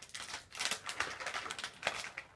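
A rapid run of close rustles and clicks as a long-haired cat's fur brushes and rubs against the camera's microphone while the cat moves past it.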